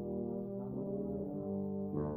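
Low brass ensemble of tubas playing sustained chords in a slow blues piece. The chord shifts partway through, and a new chord starts near the end.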